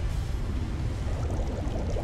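Steady rushing, bubbling water with a deep low rumble underneath, a water sound effect set to footage of churning, foaming sea.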